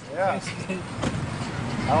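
A car's engine running with steady road-traffic noise, under brief bits of a man's voice.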